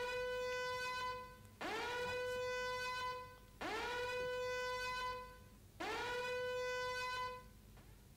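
News-channel 'breaking news' sting of horn-like tones. It gives four long blasts about two seconds apart, each swooping up into a steady held note and then fading.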